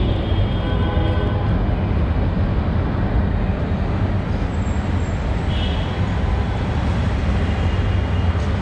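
A steady, loud low rumble with hiss that runs on without a break.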